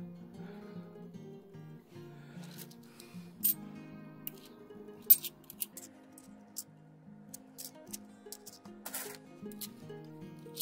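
Soft background music with a slow, stepping melody, over scattered sharp metallic clicks of 50p coins knocking together as they are flicked through a stack in the hand. The loudest clicks come about three and a half and five seconds in.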